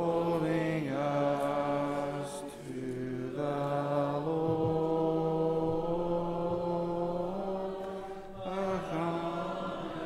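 Congregation singing a hymn a cappella, voices holding long notes in slow phrases, with short breaks for breath about two and a half seconds in and again near the end.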